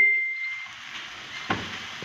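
Grated carrot and onion frying in oil in a pan, a faint steady sizzle as it is stirred with a silicone spatula. The ringing of a clink fades out in the first half-second, and there is a light tap about a second and a half in.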